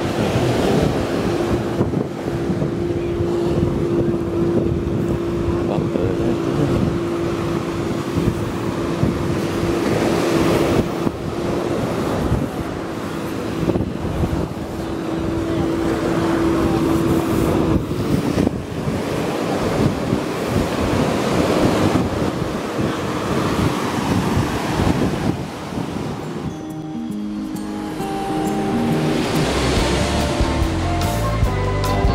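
Surf washing onto a sandy beach, with wind buffeting the microphone and a steady hum through the first half. Music comes in near the end.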